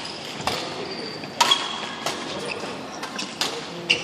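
Badminton rally: rackets striking the shuttlecock in several sharp hits, the loudest about a second and a half in, echoing around a large hall. Short high squeaks of shoes on the wooden court come between the hits.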